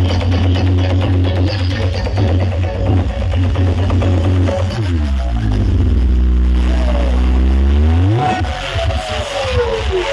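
Loud sound system playing electronic dance music with heavy bass. About halfway through, the bass glides down to a deep held tone, then sweeps up and falls again near the end.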